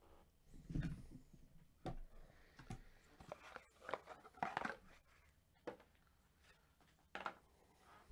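Faint, scattered handling noises: short clicks, taps and rustles, with a soft low thump about a second in.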